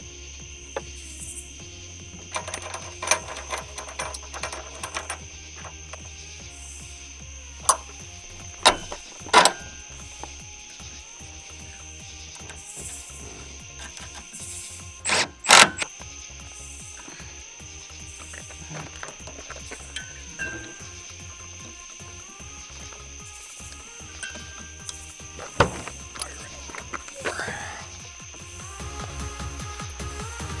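Background music over the clicks and knocks of tools fastening an LED off-road light to its mount. Two short, loud bursts about halfway through come from a cordless driver tightening the mounting nut hard against its crush gasket.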